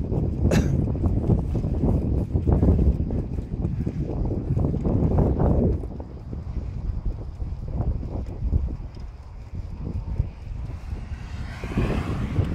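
Wind buffeting a phone's microphone while cycling, a gusty low rumble that eases after about six seconds. One sharp knock comes just after the start.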